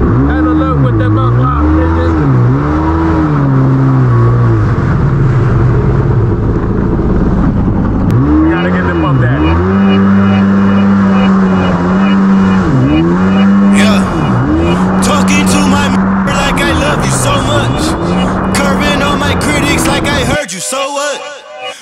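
Jet ski engine running at speed, its pitch rising and falling again and again as the throttle is worked, over a steady rush of water and wind.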